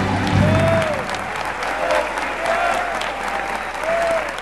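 Audience applause at the end of a live song. The final held notes of the accompaniment stop within the first second, and the clapping carries on with a few voices calling out.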